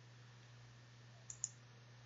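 Computer mouse button clicked twice in quick succession, faint against near silence with a low steady hum.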